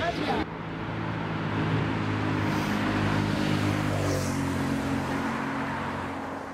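A steady engine hum, like motor traffic, whose pitch changes about four seconds in. It starts abruptly half a second in, cutting off a moment of crowd chatter.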